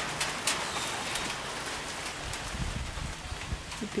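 Light rain falling: a steady hiss with scattered single drops ticking, and a few dull low thumps in the second half.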